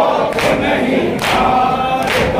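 A crowd of men chanting a mourning nauha in unison, with matam beneath it: hands striking chests together in a steady beat, a little over one strike a second.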